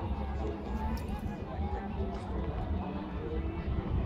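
Indistinct voices of people chatting nearby over an uneven low rumble, with no single event standing out.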